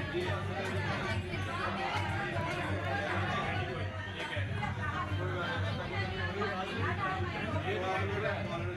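Many people talking over one another, with music playing underneath.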